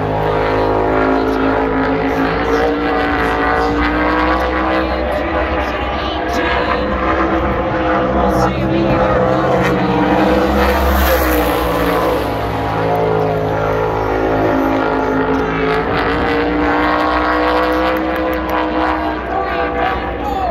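Winged sprint car engine running at speed on a qualifying lap, its pitch rising and falling as the car goes down the straights and through the turns.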